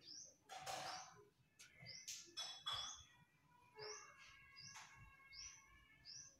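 Faint bird chirps: short, high, falling notes repeating about once a second. A few brief rushes of noise come near the start and around the middle.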